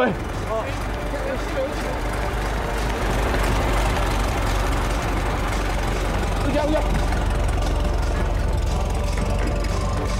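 A truck engine running with a steady low rumble, with a few brief voices calling out near the start and around the middle.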